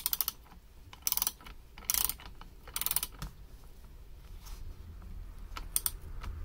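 A 10 mm socket wrench ratcheting as it tightens the nut at the foot of a suspension fork's lower leg. There are four short bursts of rapid clicking about a second apart, then a couple of faint clicks near the end.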